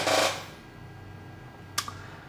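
A short breath just after a spoken word, then quiet room tone with one sharp click near the end.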